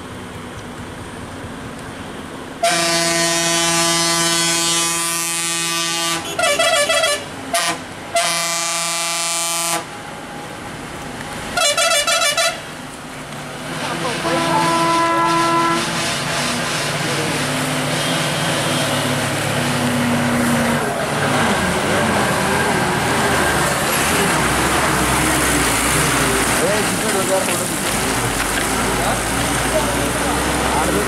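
A lorry's loud horn sounding repeatedly to warn of its approach round a blind hairpin bend: a long blast about three seconds in, two short toots, another long blast, a short toot, then a weaker horn note. After that the lorry's engine and tyres grow louder as it comes down and passes close by.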